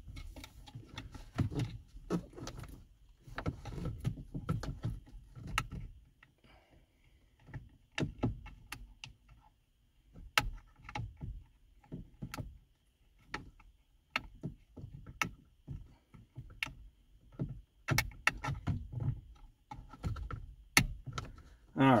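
Hands working a trailer brake controller module and its wiring-harness connector into a truck's dash opening: scattered sharp clicks, taps and rattles of plastic and metal, with low handling thumps, until the connector is plugged in.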